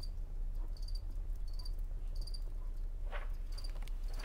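High, thin insect-like chirping, a short pulsed chirp repeating roughly every 0.7 seconds over a low steady hum. A brief rustle of handling comes about three seconds in.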